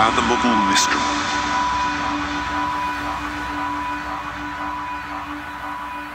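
Drum-and-bass track in a drumless ambient breakdown: a spoken vocal sample says "At" at the start, then a held synth drone and airy noise wash slowly fade down.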